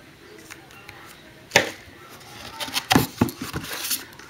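A cardboard trading-card box being opened by hand: a sharp click about one and a half seconds in, then crinkling and light knocks of cardboard and wrapping as the lid comes up.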